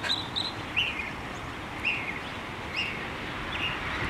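Short, high bird chirps, about one a second, over steady outdoor background noise.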